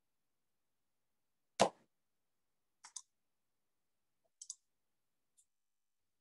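Small clicks at a computer desk picked up by a video-call microphone. One sharp knock comes about one and a half seconds in, followed by two quieter double clicks and a last faint click.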